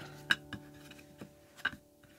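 Acoustic guitar strings ringing on after a strum and fading away, with a few light clicks and taps from handling, the sharpest about a third of a second in.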